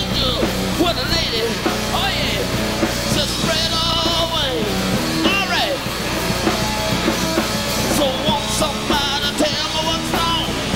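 Live hard rock power trio playing: electric guitar, electric bass and a drum kit, loud and continuous, with a lead part that bends and wavers in pitch.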